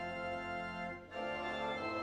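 Church organ playing sustained chords, with a short break about a second in where one chord is released and the next begins.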